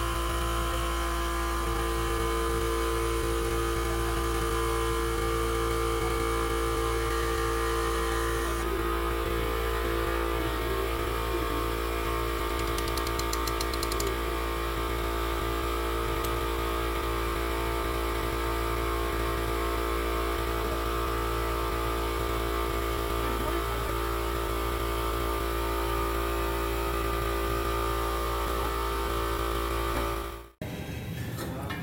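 Steady electric hum of shop machinery, an unbroken buzzing drone with a small shift in tone about nine seconds in.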